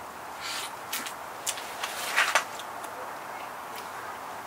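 Wet mouth noises of someone biting and sucking on a lemon slice: a few short slurps, the loudest cluster about two seconds in.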